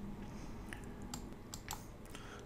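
A few faint, scattered clicks of computer keys over low room noise.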